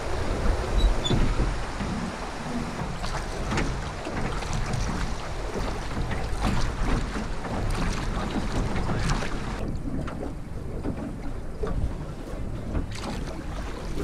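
Water washing and splashing against an aluminum drift boat and its oars as it is rowed downriver, with wind buffeting the microphone and occasional knocks. The hiss thins out about ten seconds in.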